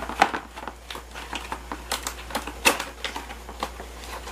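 Plastic packaging being opened by hand: irregular crinkling and small clicks as the wrapping of a microphone pop filter is pulled apart.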